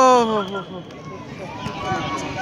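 A man's loud, drawn-out shout, sliding down in pitch and fading out about half a second in, followed by quieter shouting voices.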